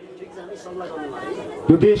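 Faint murmur of people talking in the background during a pause in a man's speech. His voice comes back in near the end.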